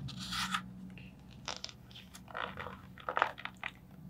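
Paper pages of a hardcover picture book rustling and scraping in short bursts as the open book is handled, the strongest just at the start.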